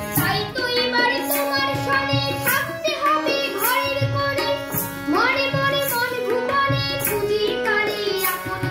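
A boy sings a Bengali devotional song in an ornamented, gliding style. He is accompanied by a harmonium and an electronic keyboard holding steady notes, with a maraca-type shaker marking the beat about twice a second.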